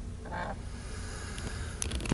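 Steady low hum of outdoor background noise, with one brief faint honk about half a second in and a couple of light clicks near the end.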